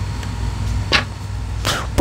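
Playing cards being handled: one sharp snap of a card about halfway through, and a short swish of a card sliding onto the table near the end, over a steady low hum.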